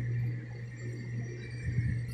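Faint soft handling knocks of a laminated kitchen cabinet door being swung on its hinges, over a steady low hum.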